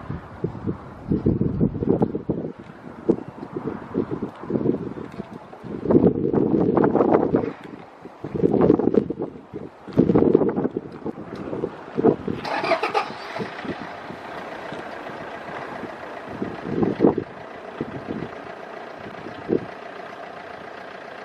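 C-17 Globemaster III's four Pratt & Whitney F117 turbofan engines running as the transport rolls out along the runway after landing. The low rumble comes in loud, irregular gusts, and from about 12 s on a steadier engine whine with several tones comes through.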